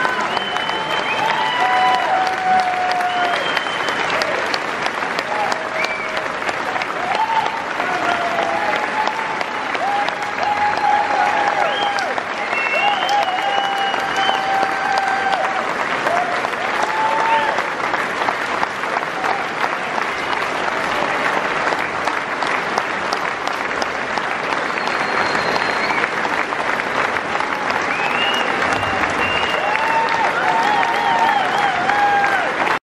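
Sustained applause from a large concert-hall audience, steady throughout, with scattered voices calling out over the clapping.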